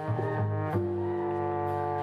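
A small live band playing instrumental music: held notes that move in steps, with an upright bass low down and a horn line above it.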